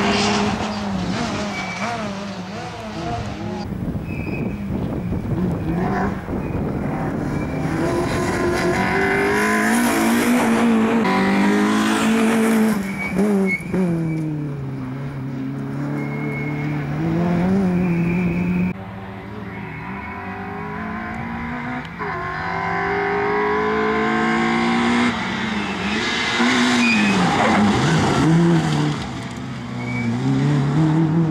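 Citroen C2 rally car's four-cylinder petrol engine revving hard at full throttle, its pitch climbing through the gears, then dropping as the driver lifts off and brakes, over several separate passes with abrupt cuts between them.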